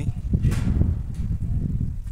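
Wind buffeting the microphone: a strong, gusty low rumble, loudest from about half a second to a second in.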